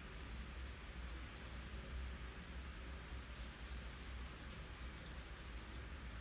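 Paintbrush working gouache onto paper: faint, scratchy bristle strokes in quick runs, over a low steady hum.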